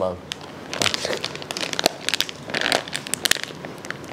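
A plastic snack packet crinkling as it is handled and torn open: a run of irregular sharp crackles.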